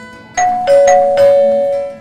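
A two-note ding-dong chime, high then low, sounded twice over acoustic guitar background music. It is a quiz-show style "correct answer" sound effect.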